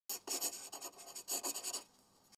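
A pen writing on paper: a run of quick, scratchy strokes that fades out near the end.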